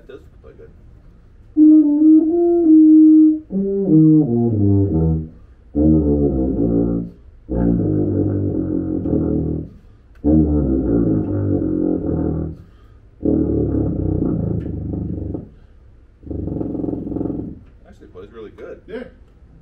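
Tuba being played: a few short mid-range notes about two seconds in, a quick run falling into the low register, then five long low notes, each held a second or two with short breaks between them.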